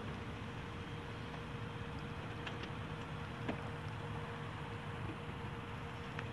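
Steady outdoor background noise: a low rumble with a constant hum, and a couple of faint ticks midway.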